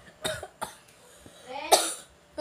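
A girl coughing: a small cough about a quarter second in, then a louder, voiced cough near the end.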